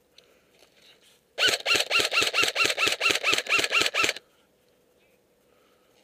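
Airsoft electric gun firing a rapid string of about thirteen shots, roughly five a second, each a sharp crack with a brief whirring rise and fall in pitch. The string starts about a second and a half in and stops a little past the middle.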